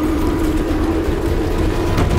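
A steady, loud, low rumbling drone from a film soundtrack, with one held tone that slowly sinks in pitch.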